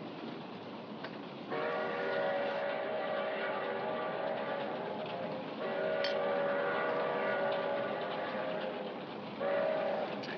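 Train whistle blowing a steady multi-note chord in three blasts over the running noise of the train: two long blasts of about four seconds each, then a short one near the end.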